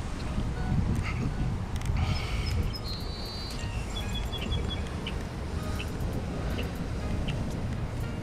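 Steady low outdoor rumble, with a few faint, high, repeated bird chirps about two to five seconds in.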